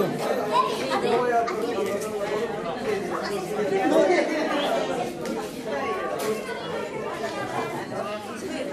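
Overlapping chatter of many guests talking at once, with no single voice standing out.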